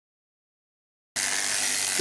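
Silence, then about a second in, sheep-shearing handpieces start abruptly, running with a steady high hiss over a low hum as sheep are crutched.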